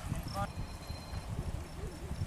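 A horse cantering on sand arena footing: a steady run of dull hoofbeat thuds. Crickets chirp steadily in the background, and there is a brief snatch of voice about half a second in.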